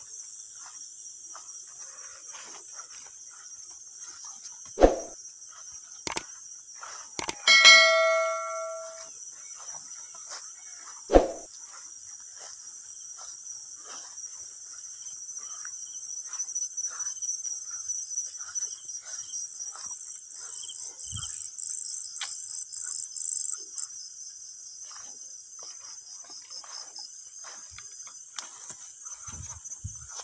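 Night chorus of crickets trilling steadily in a high pitch. Two sharp knocks sound about five and eleven seconds in, and between them comes one metallic clang that rings and fades over about a second and a half.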